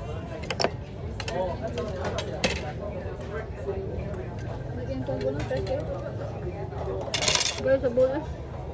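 Metal spoon clicking against an oyster shell as an opened oyster is scooped out, a few sharp clicks, with a short rasping scrape near the end, over background chatter of people talking.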